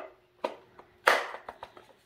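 Hard plastic parts of a Ryobi cordless grass shear knocking together as the blade attachment is pushed onto the tool body by hand. Two light clicks, the second about half a second in, then a louder sharp clack about a second in that dies away quickly.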